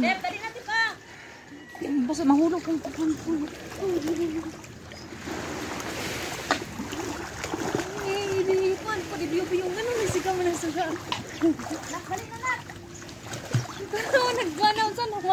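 Water splashing and sloshing as a person wades and kicks through shallow sea water, with a person's voice sounding over it through much of the time.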